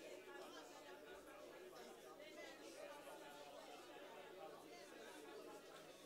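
Near silence, with only a faint murmur of speech in the background.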